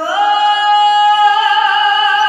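A boy's high treble voice singing into a microphone: it slides up onto a long held note, and a vibrato sets in about midway.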